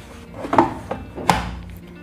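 Plastic detergent drawer of an LG front-load washing machine being pushed shut: two sharp knocks, less than a second apart.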